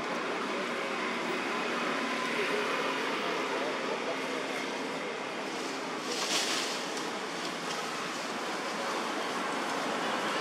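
Steady outdoor background noise with faint, indistinct voices, and a brief louder hiss about six seconds in.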